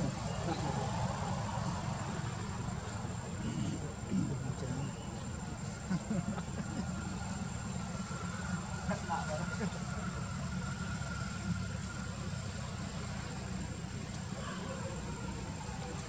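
Outdoor background noise: a steady low rumble with faint, scattered voices in the distance.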